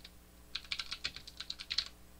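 Computer keyboard typing: a quick run of about a dozen keystrokes, starting about half a second in.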